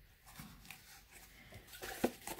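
Faint handling noise from a cardboard spool of lace trim being turned over in the hands, with a few soft taps and rustles.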